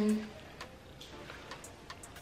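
A woman's voice trailing off at the start, then quiet room tone with a few faint, scattered ticks.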